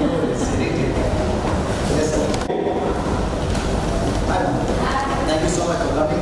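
Indistinct chatter of several voices over a steady low rumble.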